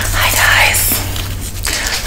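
A woman's excited voice, half-whispered, over a steady low hum that stops near the end.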